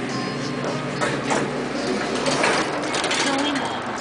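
Otis elevator car doors sliding open and a person walking out of the car, with indistinct voices in the background.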